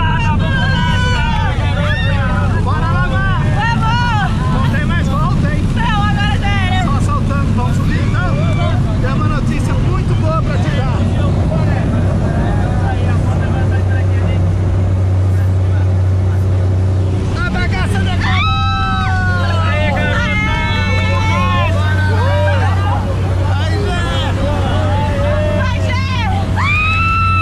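Single-engine skydiving plane's engine and propeller at takeoff power, heard inside the cabin as a loud, steady low drone through the takeoff roll and lift-off. Voices talk over it, louder near the end.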